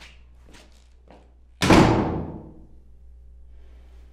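A heavy holding-cell door slamming shut once, about a second and a half in, its ring dying away over about a second. A few faint knocks come just before it.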